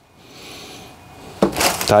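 Plastic courier mailer bag rustling and crinkling as a hand pulls back its torn opening. It is faint at first and loud for a moment near the end.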